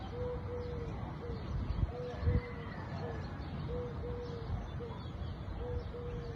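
A dove cooing a repeated three-note phrase, two longer coos and a short one, about every two seconds over a low background rumble. A couple of low thumps come about two seconds in.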